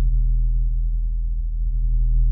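A loud, low, steady hum made of a few evenly spaced deep pitches.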